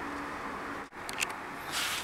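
Low, steady room noise with a faint hum; it cuts out for an instant about a second in, then come a couple of small clicks and a short hiss near the end.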